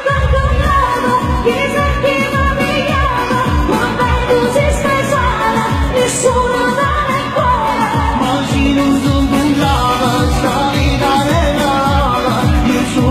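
Woman singing a Neapolitan neomelodic pop song live through a microphone and PA, over amplified band accompaniment with a steady beat.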